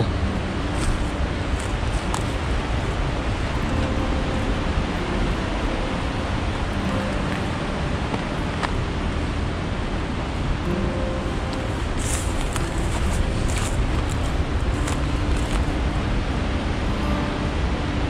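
Steady rush of river water pouring over the rocky, stair-stepped Norden Chute, an even noise with no pauses. About twelve seconds in come a few brief rustles of footsteps in dry grass.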